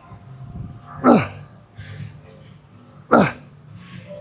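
A man's loud effort grunts, one on each rep of a bent-over barbell row, two in all about two seconds apart, each short and falling in pitch.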